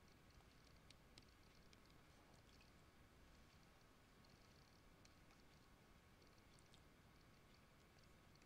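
Near silence: faint room hiss with scattered light ticks of a pen stylus tapping a tablet as handwriting is drawn.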